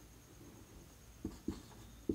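Marker writing on a whiteboard: faint scratching strokes, with two short, sharper strokes a little past the middle.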